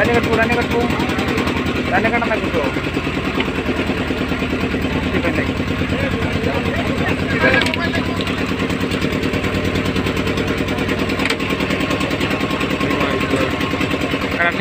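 A boat's engine running steadily under way, with a fast, even pulse.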